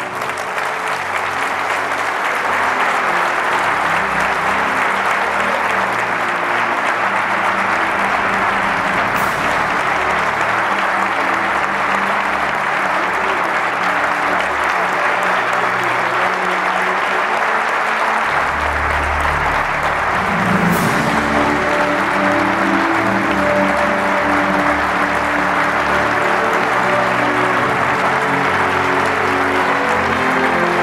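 An audience applauding, building over the first couple of seconds and then holding steady, with music playing underneath.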